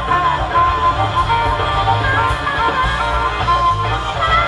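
Live band music: a harmonica played into a handheld microphone, its held notes bending in pitch, over electric bass and drums.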